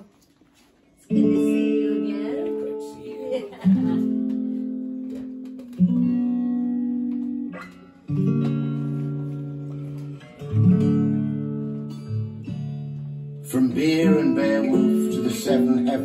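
Recorded guitar played back over studio speakers: sustained chords that ring and fade, a new chord struck every two to three seconds after a second of quiet, growing fuller near the end. It is the opening of a draft guitar accompaniment to a spoken poem.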